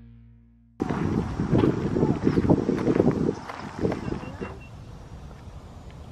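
Intro music fading out. About a second in, an abrupt cut brings in outdoor sound: uneven, rushing wind buffeting the camera microphone, loudest for the next two seconds and then softer.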